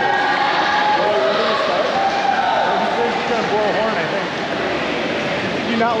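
Indistinct voices talking over a steady background hiss, with no clear words.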